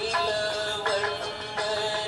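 A singer's voice holding and bending notes in a Kannada classical devotional song in Raga Yaman Kalyani, with accompaniment.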